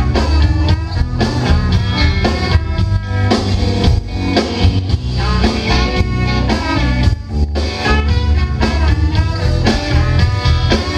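Live rock band with trumpet and saxophone over electric guitar and drum kit, playing the instrumental opening of a song with a steady beat.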